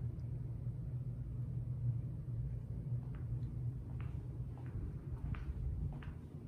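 Steady low rumble of room tone, with a few faint short ticks in the second half.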